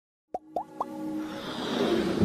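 Intro sound effects for an animated logo: three quick plops, each sliding up in pitch, about a quarter second apart, then a rising swell of electronic music building beneath them.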